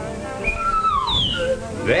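Whistling: two falling whistled notes, the second higher and sliding down.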